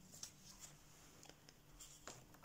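Near silence, with a few faint ticks and light paper rustles as a hand rests on and slides off the page of a paperback colouring book.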